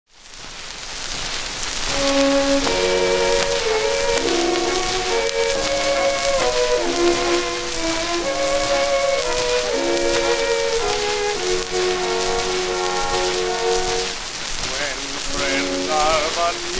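Orchestral introduction from a 1922 Edison Diamond Disc record, under a steady surface hiss and crackle. At first only the surface noise is heard; the orchestra comes in about two seconds in with a melodic lead-in.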